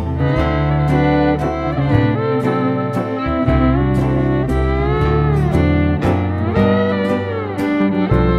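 Western swing band playing an instrumental passage: steel guitar sliding between notes over fiddle, bass and a steady drum beat.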